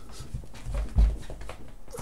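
A man's wordless excited whimpering and squealing, with rustling and a couple of dull thumps about a second in as he throws his arms up and covers his face.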